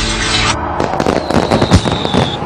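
Fireworks sound effect: a rapid run of cracks and bangs, with a thin high whistle held for about a second through the middle.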